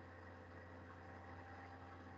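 Near silence: a faint, steady low hum and hiss of room and line noise.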